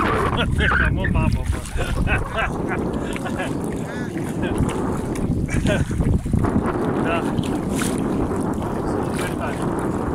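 Wind buffeting the phone's microphone over the sloshing and splashing of legs wading through waist-deep sea water.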